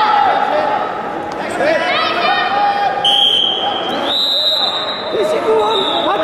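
Several voices calling out over one another in a large, echoing sports hall during a wrestling bout. A steady high tone starts about halfway through and steps up in pitch a second later.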